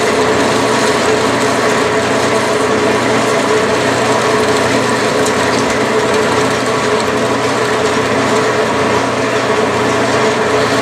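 Metal lathe running steadily under power, its gear drive giving a constant hum with several whining tones, while a carbide tool takes a turning cut along a solid lead bar.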